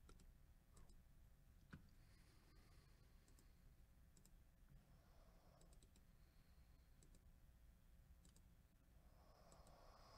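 Near silence: faint room tone with a dozen or so soft, scattered clicks from a computer mouse and keyboard.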